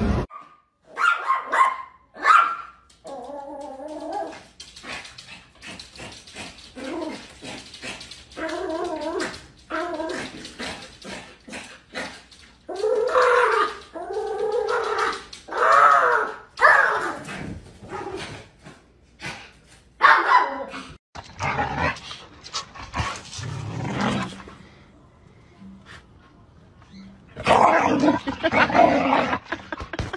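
Dogs barking and whining: a string of separate calls with short gaps between them, the longest and loudest about halfway through.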